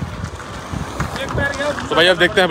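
Wind buffeting the phone's microphone, a rough uneven rumble, with faint voices in the background in the second half.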